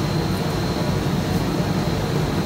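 Celsius MDH-158 industrial dehumidifier running, its large snail-type centrifugal fan giving a steady rush of air over a low hum.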